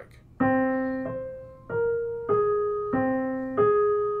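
Piano playing two short melodic motives back to back, one note at a time. It is a slow, even line of about six notes, each ringing and fading before the next.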